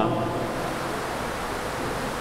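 Steady, even hiss of background room noise, with no distinct events.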